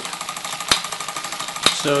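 Fleischmann 1213 overtype model steam engine running with a rapid, even beat, slowing as its burner runs out of fuel, with a sharp click about once a second from the belt-driven works.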